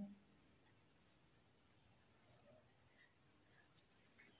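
Faint, scattered scratches of a sketch pen tracing an outline on paper, barely above silence.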